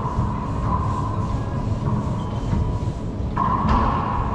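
Racquetball rally in an enclosed court: sharp hits of the rubber ball off racquets and walls, echoing in the court, the clearest strike near the end. Under them runs a steady low rumble.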